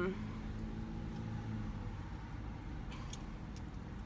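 Steady low rumble inside a car's cabin, with a few faint clicks about three seconds in.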